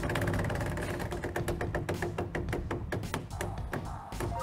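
Game-show prize wheel spinning, its pegs clicking rapidly past the pointer, the clicks slowing near the end as the wheel winds down. Background music plays underneath.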